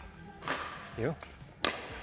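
Two sharp pops of a plastic pickleball struck by paddles whose faces are covered in 60-grit sandpaper, a serve and its return: one about half a second in and a crisper one a little over a second later.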